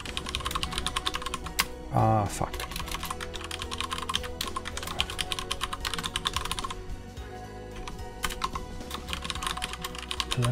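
Fast typing on a computer keyboard: rapid runs of key clicks, with a short lull about seven seconds in. A brief vocal sound breaks in about two seconds in.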